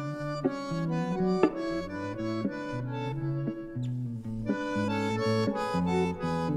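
Bandoneon and guitar playing a tango instrumental: the bandoneon sounds reedy held notes and chords that change every second or so, with the guitar plucking along underneath.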